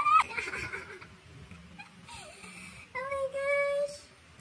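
A high-pitched wordless voice. At the start it gives a short squeal that rises in pitch, then it goes quieter, and near the end it holds one steady note for about a second.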